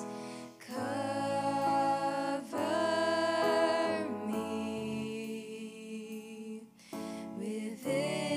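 Female voices singing a slow worship song in long held notes, phrase by phrase with short breaks, over sustained keyboard chords.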